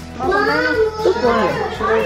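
Speech: voices repeating 'How many? How many?', with children's voices among them.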